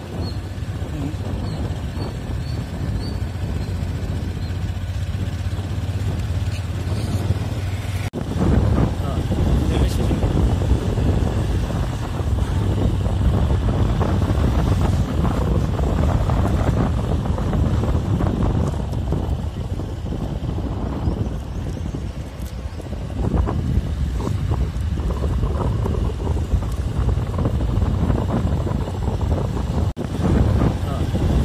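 Outdoor street ambience dominated by wind rumbling on the microphone, with low vehicle engine rumble. It jumps louder and more gusty about eight seconds in.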